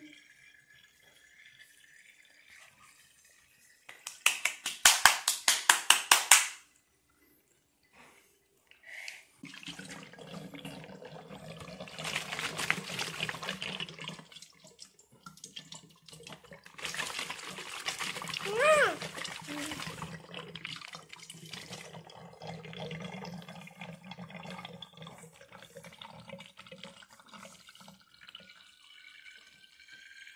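Water sloshing and gurgling inside joined two-litre plastic bottles as it is swirled into a vortex and drains through the neck. A burst of rapid sloshing comes about four seconds in, then a steady gurgling rush from about ten seconds on, swelling louder twice.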